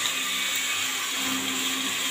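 Steady sizzling hiss of chopped bitter gourd, potato and onion frying in hot oil in a kadhai.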